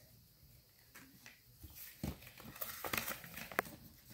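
Faint rustling of a small foil packet and a paper leaflet being handled, with a few light taps and clicks in the second half.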